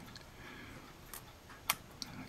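Two small ticks about half a second apart, the second sharper, as a thin brass photo-etched fret is handled under a fingertip and a flat blade, over quiet room tone.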